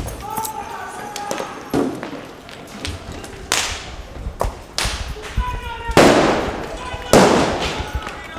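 Four loud explosive bangs with long echoing tails, the third, about six seconds in, the loudest, with voices calling out between them in a street riot.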